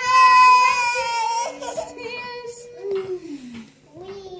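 A young child's long, high-pitched vocal squeal, held on one pitch for about a second and a half, followed by quieter voices and a shorter call sliding down in pitch.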